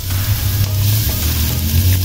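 Minced garlic sizzling in hot oil in a wok: a steady frying hiss over a steady low hum.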